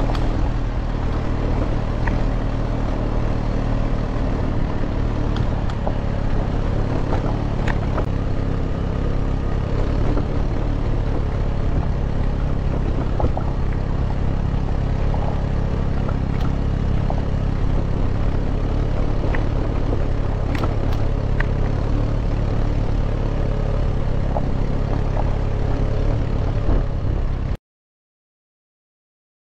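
Steady low rumble of wind on the microphone while riding fast on a gravel road, with tyre crunch and bike rattle and scattered small clicks and knocks from the stones. It cuts off suddenly near the end.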